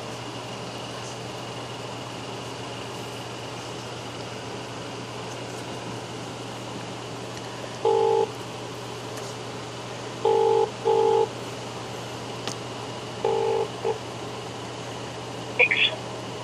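Ringback tone of an outgoing phone call to Australia, heard over a steady line hum: short tone bursts begin about halfway through, some in close pairs, repeating every few seconds. The call is ringing at the far end and has not yet been answered.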